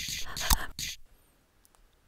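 Tail end of a short intro jingle: three quick hiss-like hits in the first second, then silence.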